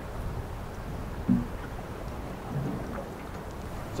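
Steady wind and water noise on a drifting boat, with two faint short sounds about a second and two and a half seconds in.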